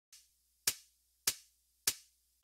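Three sharp percussive clicks, evenly spaced about 0.6 s apart, counting in the beat of a hip-hop track before the music starts.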